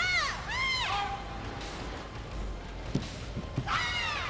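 High-pitched shouts in a large hall: two rising-then-falling cries in the first second and another just before the end, with a few short, soft thuds in between.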